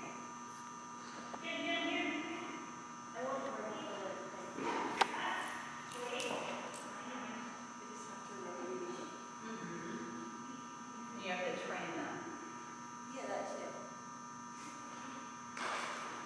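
Faint, indistinct talking in short stretches over a steady electrical hum, with a single sharp click about five seconds in.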